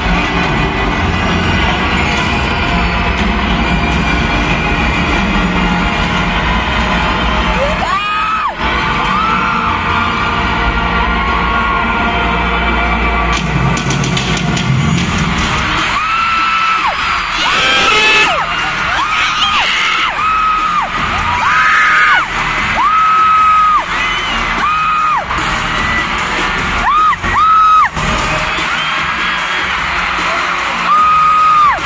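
Live pop concert music over an arena sound system, with strong bass for the first half. About halfway in the bass drops away and a high vocal line of held notes comes over it, with crowd cheering and yells.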